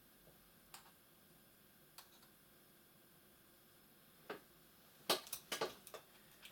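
A few light, isolated clicks of a small hand tool against a laptop's bottom case, then a quick run of sharper clicks near the end, over quiet room tone.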